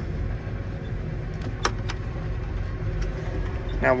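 John Deere 8330 tractor's six-cylinder diesel running steadily at low idle, heard from inside the cab while the transmission's air-purge calibration runs. A few sharp clicks come about a second and a half in.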